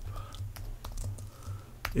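Typing on a computer keyboard: a series of irregular keystroke clicks over a faint, steady low hum.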